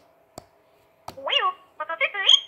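BB-8 droid beeps and warbling electronic chirps from a Hasbro Star Wars Force Link wristband's small speaker, set off by a BB-8 figure held to the band. They start about a second in, after a couple of light clicks.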